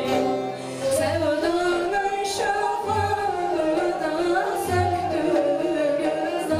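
A woman singing a Turkish folk song in long, bending melodic lines, accompanied by bağlama (long-necked saz), with a low beat about every two seconds.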